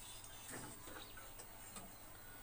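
Marker pen writing on a whiteboard: faint short strokes and taps of the tip against the board.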